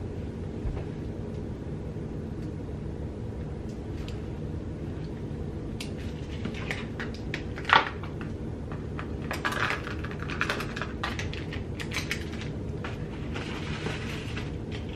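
Small clicks and rustles of makeup brushes and their plastic packaging being handled and set down on a table, with one sharper click about halfway through, over a steady low room hum.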